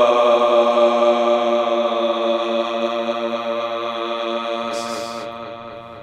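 A man's voice chanting one long held note at a steady pitch, like a meditative 'om', fading out near the end.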